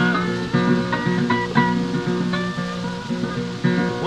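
Acoustic Delta blues guitar playing a short instrumental break between sung lines, a run of picked notes and strums with no voice.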